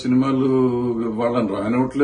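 A man speaking in a steady, drawn-out voice, holding one long syllable at an even pitch for well over a second before going on talking.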